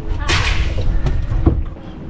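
A boat's in-deck fish box: a fish goes in with a brief noisy rush, then a single sharp knock about a second and a half in as the hatch lid shuts. Low wind and boat rumble run underneath.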